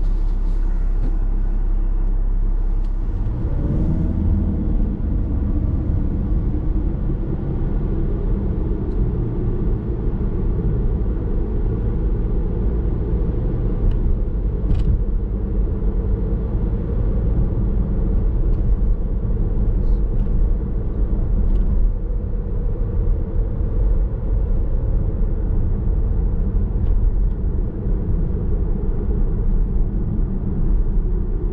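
Car idling at a standstill, then pulling away about three seconds in with a rising drivetrain tone, and settling into steady road and tyre noise as heard inside the cabin.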